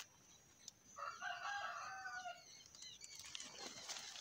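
A rooster crowing once, faint, starting about a second in and lasting about a second and a half.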